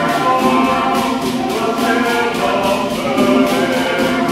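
Mixed choir singing in sustained harmony over a steady hand-drum beat of about four strokes a second.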